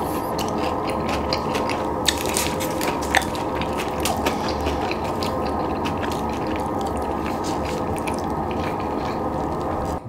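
Close-miked chewing of a mouthful of poutine (fries, cheese curds and gravy): a dense, steady run of small clicks and mouth noises with no pauses.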